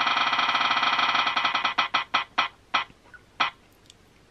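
A spin-the-wheel phone app's ticking sound as the wheel spins. Rapid ticks thin out and slow as the wheel loses speed, the last one about three and a half seconds in as it stops.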